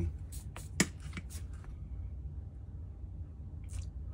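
A few small crackles and clicks, the sharpest just under a second in, as 60/40 rosin-core solder is fed onto a hot soldering iron tip to tin it. A steady low hum runs underneath.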